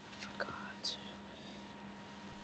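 A person's faint, whispered voice: a couple of soft short sounds and a brief hiss a little under a second in, over a faint steady hum.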